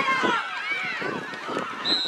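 Spectators yelling and cheering in several overlapping voices, with a laugh just after the start. Right at the end a referee's whistle starts, one steady high blast.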